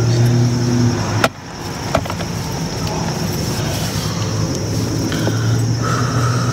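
Steady hum of a car running, heard from inside the cabin, with a sharp click a little over a second in.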